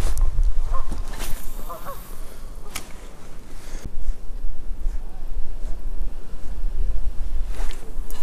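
Wind buffeting the microphone in a deep rumble. A few short honking bird calls sound in the first two seconds.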